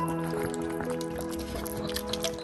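Background music with held chords over the wet smacking and quick clicks of puppies eating from a plastic bowl.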